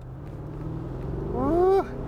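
Mercedes-Benz S550 Cabriolet's 4.7-litre twin-turbo V8 driving with the top down, engine and wind noise building steadily louder. A man's voice calls out briefly near the end.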